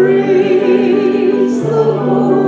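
A woman sings a gospel song into a handheld microphone, holding a note with a wide vibrato. Sustained lower accompaniment notes sound beneath her voice and change pitch about midway.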